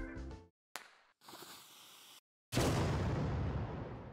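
Animated hand-grenade sound effects: a sharp click as the spring-loaded safety lever flies off, a short faint hiss of the fuse burning, then about two and a half seconds in a sudden loud explosion that dies away over the next two seconds.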